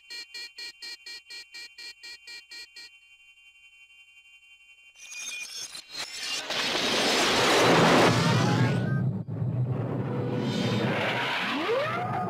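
Cartoon sound effects over the score. A fast rhythmic rattle with a steady high ringing runs for about three seconds, then stops. After a faint moment, a long loud noisy blast builds from about five seconds in, with a rising whistle near the end.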